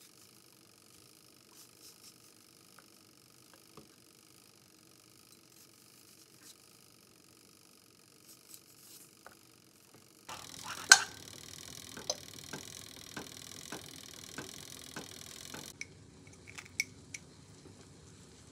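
Quiet kitchen handling: faint clicks as apple slices are set out on a wooden cutting board. Then a steady hiss, a sharp click as butter is scraped from its foil wrapper into a ceramic frying pan, and a run of even ticks about two a second.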